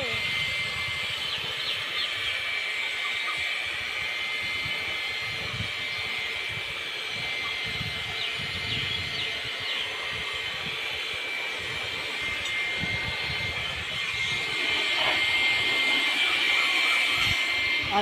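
Small handheld electric air blower running steadily: a rushing of air with a thin high whine, a little louder over the last few seconds.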